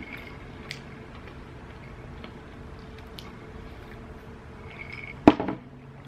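Quiet room tone with a faint steady hum and a few faint ticks, then one sharp click of tableware about five seconds in.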